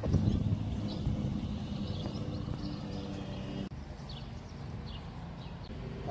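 Big-turbo 3.8-litre V6 of a Hyundai Genesis idling steadily, with a brief dip in level a little past halfway.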